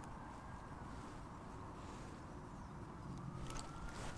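Faint outdoor ambience: distant road traffic running steadily, with a faint drifting whine, and a few faint clicks near the end.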